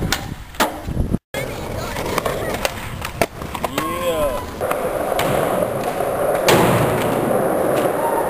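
Skateboard on concrete: a few sharp clacks of the board hitting the ground in the first second, then steady rolling of the wheels that gets louder over the last few seconds. A short voice sounds about four seconds in.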